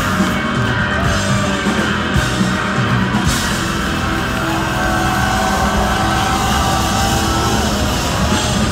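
Live rock band playing loud, with electric guitars and drums.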